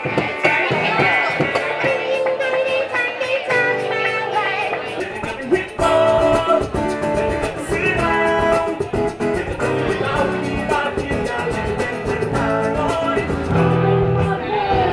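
Live acoustic guitar playing with a singer, a steady flow of plucked and strummed notes.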